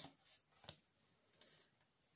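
Near silence, with a faint click and a soft rustle as a tarot card is picked up from a deck and lifted.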